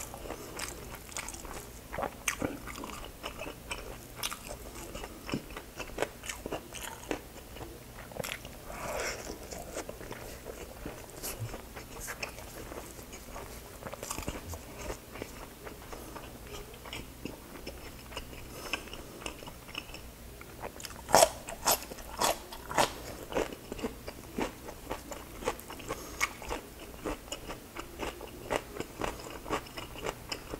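Close-up chewing of crispy fried pork, with sharp, crackly crunches and wet mouth sounds; a run of the loudest crunches comes about two-thirds of the way through.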